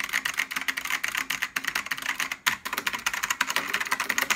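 Fast typing on a Matias Tactile Pro mechanical keyboard, its clicky ALPS-type key switches clacking in a dense, rapid run with a brief pause about halfway through.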